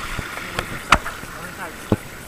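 Handling noise from an action camera's waterproof housing just lifted out of a pool: a few sharp knocks against it, the loudest about a second in and another just before the end, over a fading hiss of water running off.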